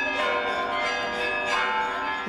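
Church bells ringing: several bells of different pitches are struck in turn, their tones ringing on and overlapping.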